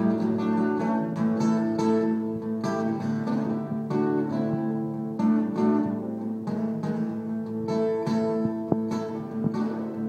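Acoustic guitar played solo, single notes and chords picked over a low note that keeps ringing underneath.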